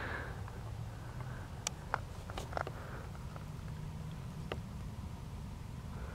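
Quiet outdoor ambience: low wind rumble on the microphone, with a few faint sharp clicks between about one and a half and four and a half seconds in.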